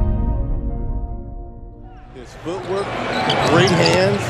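Background music fading out over the first two seconds. Then basketball game sound cuts in: arena crowd noise, a voice, and a basketball being dribbled on a hardwood court.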